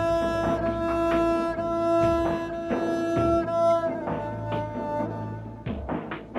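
Background music: a slow score of low bowed strings, cello and double bass, holding long sustained notes, the first held for about three and a half seconds before the line moves on.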